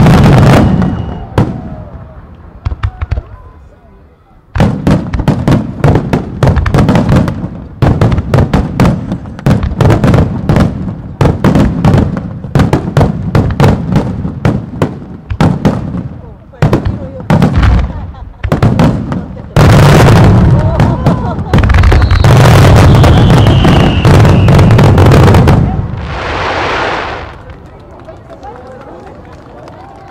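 Aerial fireworks shells bursting in rapid succession, many sharp booms close together, building about twenty seconds in to a dense near-continuous barrage. The barrage stops after about twenty-five seconds, with a short rushing noise, and only faint voices remain.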